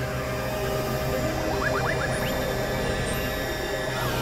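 Several music tracks playing over one another in a dense experimental mix, with steady low drone tones and a run of short rising chirps about halfway through.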